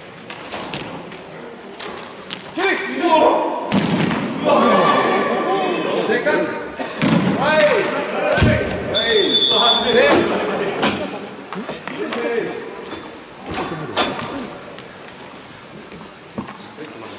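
Players shouting and calling to each other during a broomball game on ice. Several sharp knocks and thuds ring out through it, at their most frequent in the busy middle stretch.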